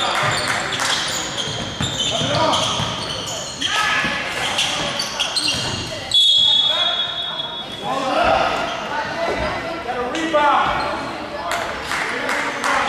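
Indoor basketball game: a ball bouncing on the hardwood court mixed with shouting voices, all echoing in a large gym.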